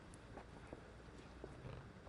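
Near silence: faint open-air background with a few soft, scattered clicks.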